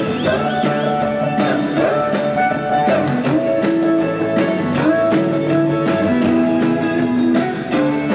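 Live rock and roll band playing, with an electric guitar lead of held and bent notes over bass and a steady drum beat.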